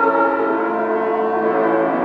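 Church organ music: sustained chords held steadily, with a new chord starting right at the beginning.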